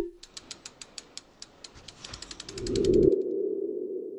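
Sound effects of an animated logo sting. A sharp hit comes first, then a run of quick clicks that speed up after about two seconds. A swelling steady tone then comes in, loudest about three seconds in as the logo appears, and holds as it slowly fades.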